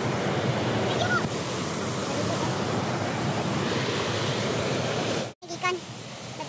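Waterfall cascade rushing steadily over rock close to the microphone. It cuts off suddenly near the end.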